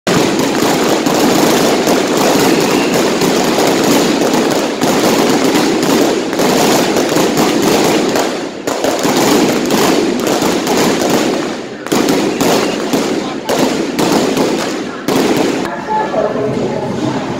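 A long string of firecrackers going off in a loud, dense crackle of rapid bangs, breaking into shorter runs with brief pauses in the last few seconds.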